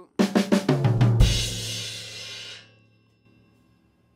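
Drum kit playing a triplet fill: about eight quick strokes on the snare and down the toms land on a cymbal crash with the bass drum about a second in. The cymbal rings out and fades away by about three seconds in.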